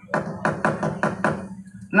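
A quick run of about seven sharp wooden raps, roughly five a second, each with a short ring, then a few fainter taps, over a low steady hum. This is the wayang dalang's cempala, a wooden mallet, knocking on the puppet chest and keprak plates between lines of dialogue.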